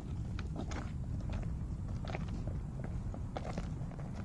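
Footsteps crunching on the gravel ballast of a railway track, irregular steps about every half second, over a steady low rumble.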